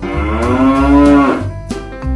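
One long, drawn-out call with a rich, buzzy tone, lasting about a second and a half, rising and then easing slightly in pitch. It sits over background music with a steady bass.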